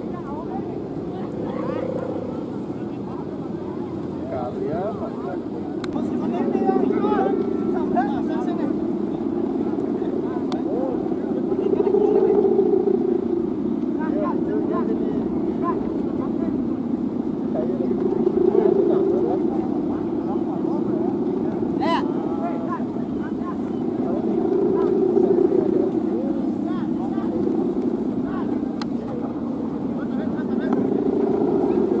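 Continuous droning hum of the bow hummers (guwangan) on large Balinese kites, swelling louder and fading back about every six seconds, with people's voices faintly underneath.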